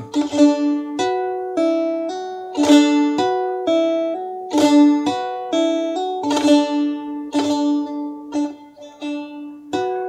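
Bağlama (saz) played in the şelpe technique: the strings are struck and hammered onto the fretboard with the fingers of both hands, with no plectrum, repeating a short phrase of ringing notes about every two seconds.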